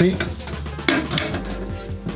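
Small metal wall mailbox being handled, its front door rattling as it is opened, with a sharp metallic click about a second in.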